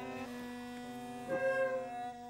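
Great Highland bagpipe drones sounding one steady, held, humming chord as a beginner keeps the bag blown up. A short higher note wavers in about one and a half seconds in.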